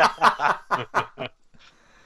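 People laughing in a run of short bursts that die away after about a second and a half.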